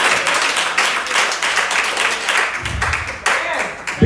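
Church congregation clapping and calling out in response to the preaching: many quick claps blending into steady applause, with shouted voices mixed in.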